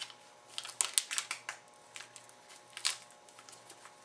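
Sharp plastic clicks and crinkling as a plastic icing bag tie is taken off a piping bag. The clicks come in a quick cluster about a second in and again near three seconds.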